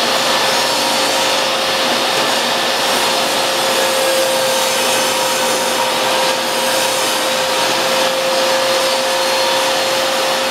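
DeWalt table saw ripping a laminate flooring plank lengthwise: the motor and blade run with a steady whine and an even cutting noise throughout the pass.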